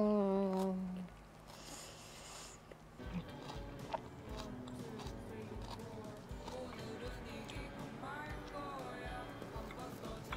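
A woman's long, falling 'mmm' of enjoyment through a full mouth while chewing, then quieter background music with a light beat from about three seconds in.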